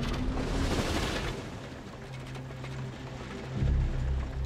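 Cartoon ride cart setting off on its track: a rising whine as it starts, a rush of noise in the first second, then a steady low rumble with a fast clatter as it runs along the rails, surging louder near the end.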